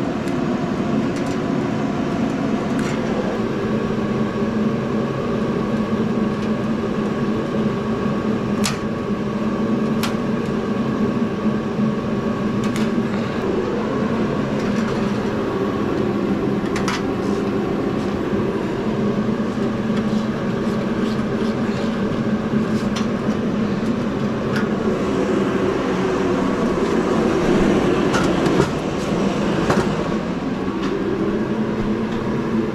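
Shop heater running with a steady hum. A few sharp clicks from hand tools working the light fixture's wiring come through over it.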